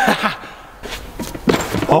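A man's laughing voice at the start, then a few short thumps and knocks about one and a half seconds in, as hands and feet land on a leather pommel horse and the gym floor.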